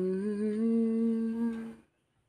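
A man humming one held note, "hmmm", with a slight rise in pitch at the start, stopping shortly before the end.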